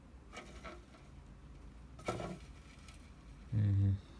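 Quiet room with a few faint, short rustling and handling sounds; near the end a man's voice makes a brief low drawn-out hum.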